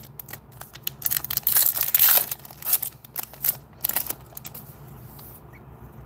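Foil wrapper of a trading-card pack being torn open and crinkled by hand: a quick run of crackles and rips for a few seconds, thinning out near the end.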